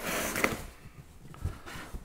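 Cardboard moving box being lifted and handled, a rustling scrape of cardboard on cardboard at the start, then a few soft knocks.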